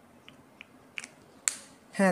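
A few short, sharp clicks over faint room hiss, the last and loudest about one and a half seconds in.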